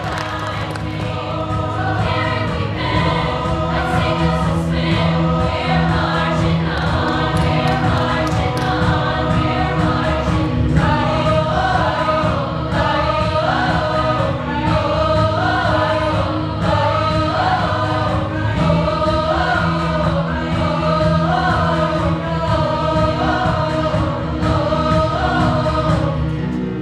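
A large mixed-voice a cappella choir singing in parts, with a sustained low bass line under several moving upper harmonies.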